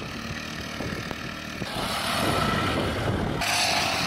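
Go-kart's small gasoline engine running under throttle as the kart spins on loose gravel, with gravel spraying and tyres scrubbing. The sound changes about halfway through and stops shortly before the end.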